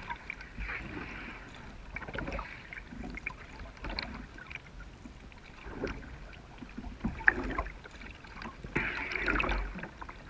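Kayak paddle strokes through calm river water: a swish and drip of water with each blade, about one stroke every one and a half to two seconds, with a few light clicks in between.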